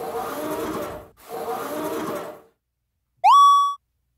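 Editing sound effects: two rushing noise sounds of about a second each, then about three seconds in a short, loud rising whistle-like tone that levels off and stops.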